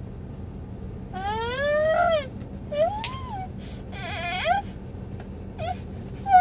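A toddler whining wordlessly in high-pitched, drawn-out whimpers. A long rising whine comes about a second in, followed by a shorter rise-and-fall and two more short whines.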